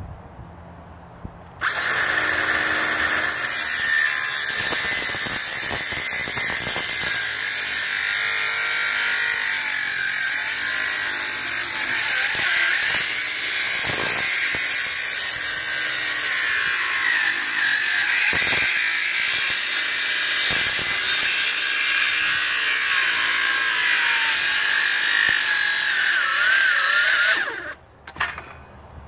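Corded circular saw ripping along the length of a wooden board. The saw starts about two seconds in, holds a steady cutting whine for about 25 seconds and stops just before the end.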